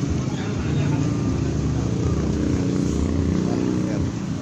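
A motor vehicle's engine running steadily, a low rumble.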